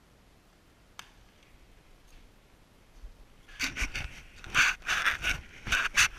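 Handling noise from the camera being picked up and repositioned: a single click about a second in, then, past halfway, a run of loud, irregular scrapes and knocks.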